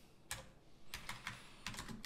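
Computer keyboard keystrokes typing a short filename: faint, irregular clicks, a few at first and more closely spaced in the second half.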